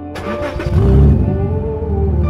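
Car engine starting as the ignition key is turned: a short burst of cranking, then the engine catches with a brief rev about a second in, its loudest point, and settles into a steady low running sound under background music.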